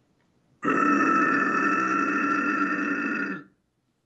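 A man's guttural extreme-metal vocal, one held, steady distorted growl lasting nearly three seconds before it stops.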